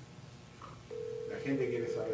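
Mobile phone ringback tone as an outgoing call rings, not yet answered: one steady tone starting about a second in.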